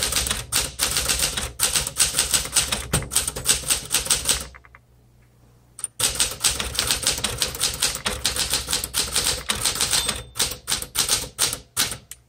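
A 1969 Smith Corona Classic 12 manual typewriter being typed on with rapid keystrokes. The typing pauses for about a second and a half a little over a third of the way through, then carries on.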